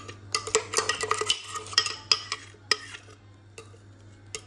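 Runny cake batter of blended eggs, oil and sugar pouring in a thin stream from a blender jar into a glass bowl, with scattered light clicks and knocks of kitchenware; the sounds thin out about three seconds in.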